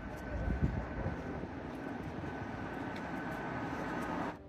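City street traffic noise: a car driving along the road, heard as a steady rumble and hiss that is a little louder in the first second, with a faint steady high tone throughout.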